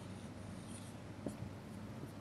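Marker pen writing on a white board: faint, soft strokes over a low, steady room hum.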